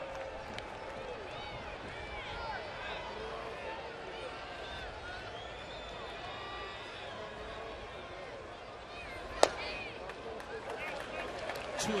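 Ballpark crowd chatter, with one sharp pop about nine seconds in: an 89 mph fastball smacking into the catcher's mitt, taken for a ball.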